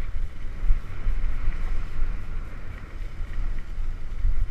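Wind buffeting the microphone of a helmet-mounted camera on a moving mountain bike: a gusty, uneven low rumble with a fainter steady hiss above it.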